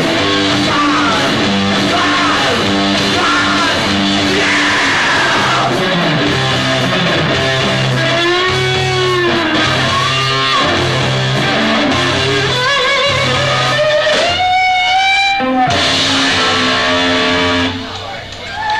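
Hardcore punk band playing live: loud electric guitar, bass and drums in a lo-fi concert recording. A wavering high pitched tone stands out about three quarters of the way through, and the sound briefly dips near the end.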